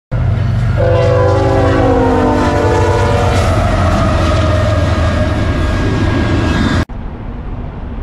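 Diesel freight locomotives rumbling past a grade crossing. About a second in, the air horn sounds a multi-note chord for about two seconds, its pitch sliding down as the locomotive passes. The sound cuts off suddenly near the end.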